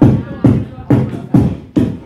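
Beatboxing amplified through a handheld microphone: a steady beat of deep bass kicks, a little over two a second, with snare- and hi-hat-like mouth sounds between them.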